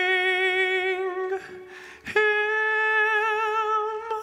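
Solo tenor voice singing two long held notes with vibrato, the second pitched higher, with a short breath between them about two seconds in.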